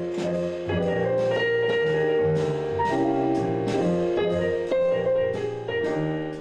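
Jazz improvisation with a low walking line of notes under melody and chords, and regular strikes keeping time. Only one musician is playing; all the parts heard around that player are being improvised by computer software.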